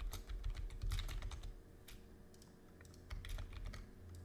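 Typing on a computer keyboard: a quick run of key clicks in the first second, a few single keystrokes, then another short run near the end.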